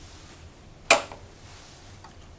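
A circuit breaker being switched off, a single sharp snap a little under a second in.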